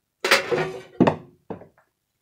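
A wooden block sliding across the beeswax-waxed metal bed of a Craftsman thickness planer, then a sharp knock about a second in and two lighter knocks of wood on the bed. The wax lets the wood slide freely rather than stick.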